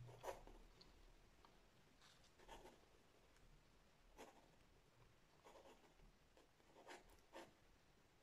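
Faint scratching of a pencil drawing lines on watercolour paper: several short, separate strokes.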